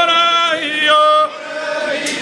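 A group of voices singing an Indigenous round dance song in unison, chanted on long held notes that step from one pitch to another, with a short drop in loudness about two-thirds of the way through.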